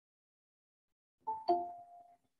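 Two-note electronic notification chime, the second note louder and ringing on briefly: Google Meet's alert that someone is asking to join the call.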